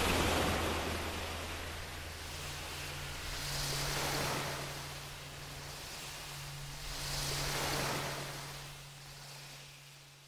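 Ocean surf washing in, the hiss of each wave swelling and ebbing about every three and a half seconds over a low steady hum, fading out near the end.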